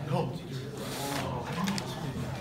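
Chalk tapping and scraping on a blackboard as a solution is written out in quick strokes, with low voices in the room.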